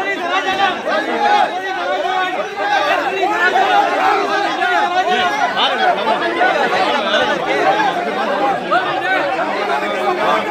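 Crowd chatter: many voices talking over one another at once, steady throughout.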